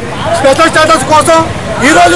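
A man speaking loudly and continuously in short phrases, with crowd chatter and vehicle noise underneath.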